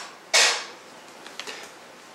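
A stiff page of a large hardcover photo book being turned: one sharp paper swish about a third of a second in, then a few faint handling clicks.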